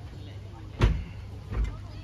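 Two dull thumps, the first and louder a little under a second in and a weaker one about three quarters of a second later, over a steady low hum and faint murmured voices.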